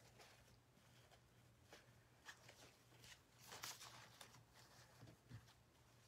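Near silence, with a few faint, soft rustles of a fabric ribbon bow being fluffed and arranged by hand.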